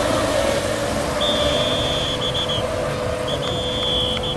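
Brushless electric RC racing boats running at speed on the water, a steady rushing noise with a low hum. A high-pitched whine comes in twice, for about a second each time, the second near the end.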